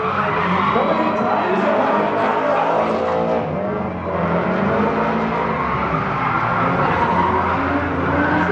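Drift cars on track: engines revving, their pitch rising and falling, with tyres squealing as the cars slide.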